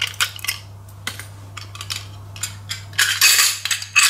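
Small metallic clicks and taps from handling the parts of an opened hard disk drive. About three seconds in comes a louder scraping metal rattle as a platter and its spacer ring are worked off the spindle.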